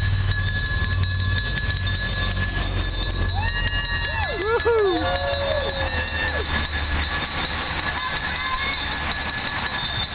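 A large peloton of road racing bicycles riding past close by, a steady whir of tyres and chains over the low rumble of escort motorcycle engines, which fades after about 7 s. In the middle, roadside spectators cheer with a few rising and falling whoops.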